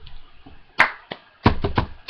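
Cup song rhythm: sharp claps and taps of hands and a cup on a tabletop. There is one loud strike a little under a second in, then a lighter one, then a quick run of three heavier thumps near the end.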